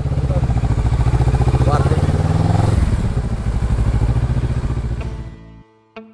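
Motorcycle engine running at low revs in slow traffic, a steady pulsing low note that fades out about five seconds in.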